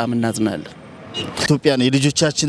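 Men speaking in Amharic into a hand-held microphone: one voice up to about a third of the way in, a short gap, then another man speaking near the end.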